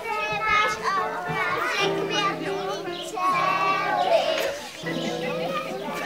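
Many young children's voices at once, chattering and calling out over one another.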